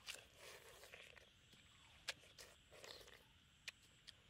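Faint wet crunching and slurping of someone biting into and chewing a juicy watermelon slice, in two short bites with a few sharp clicks between them.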